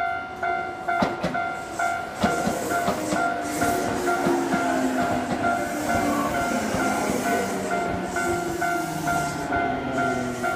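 Japanese level-crossing warning bell ringing in a steady two-tone pulse about twice a second. From about a second in, a Tokyu Ikegami Line electric train rolls over the crossing, its wheels clacking over the rail joints over a rumble and a low humming tone from the train.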